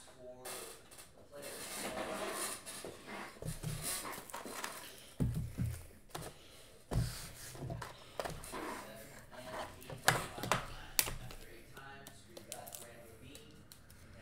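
Hands handling trading cards and rigid plastic card holders on a table: rustling and soft knocks, with a few sharp plastic clicks about ten to eleven seconds in.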